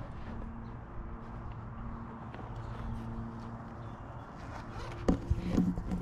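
Wind rumbling on a small camera's microphone, with a faint low hum that comes and goes and a single knock about five seconds in.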